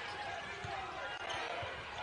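Basketball dribbled on a hardwood court, a few dull bounces over the low hum of a gym crowd.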